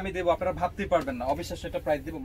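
A man talking; no other distinct sound stands out.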